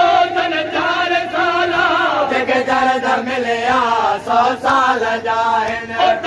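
A group of men chanting a Sindhi noha, a Muharram mourning lament, together, with long wavering held notes. About two seconds in, the chant moves on to a new line with a lower, shifting melody.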